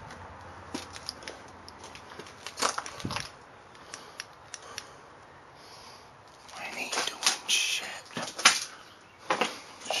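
Scattered knocks, creaks and crunches of footsteps and handling on a debris-strewn floor around an old wooden door, with a louder run of scraping and rustling in the last few seconds.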